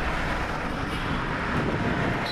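Steady wash of town ambience with traffic noise.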